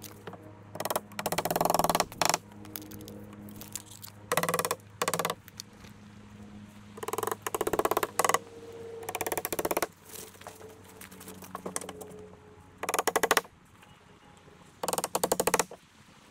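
Cordless impact driver driving screws into the coop's wood framing, in about eight separate bursts of rapid hammering, each up to about a second long.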